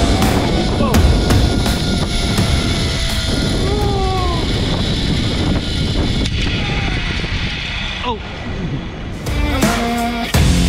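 Heavy wind noise buffeting a camera microphone on a fast head-first zipline ride, with a few drawn-out vocal whoops and a shouted "Oh!" near the end. The wind noise cuts off shortly before the end as music takes over.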